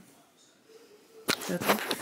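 A quiet room for a little over a second, then a sharp click, followed by a woman's voice briefly near the end.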